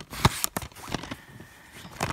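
Handling noise: two sharp knocks in the first half second, then soft rubbing and rustling as the phone and a plastic DVD case move against bedding fabric.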